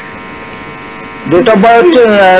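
Steady electrical mains hum with a buzzy edge, then a person starts speaking a little past halfway.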